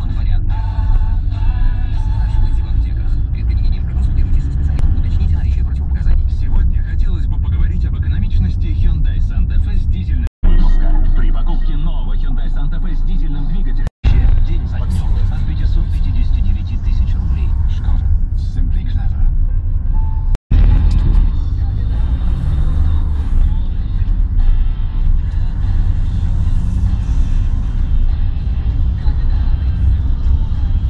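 Steady low rumble of a car driving in city traffic, heard from inside the cabin, with music and voices underneath. The sound drops out completely three times, each for a moment.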